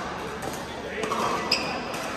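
A pickleball struck by a paddle: one sharp, ringing pop about one and a half seconds in, with a fainter hit earlier. Behind it is a steady hubbub of voices and more hits from other courts, echoing in a big hall.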